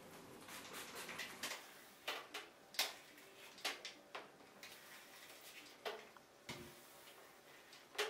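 Faint, irregular clicks and taps from a hair straightener being handled and clamped onto sections of hair, a few a second at most, spaced unevenly.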